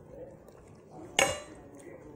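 Metal cutlery strikes a dish once just over a second in: a single sharp clink with a short ring. The eating sounds around it are faint.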